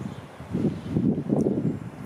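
Wind buffeting the microphone: an irregular low rumble that gusts up after a brief lull.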